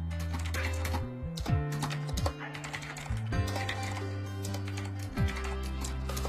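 Typing on a computer keyboard, a quick irregular run of key clicks, over background music with a steady bass line and kick drum.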